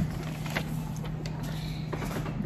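Steady low hum of room background noise, with a couple of faint ticks.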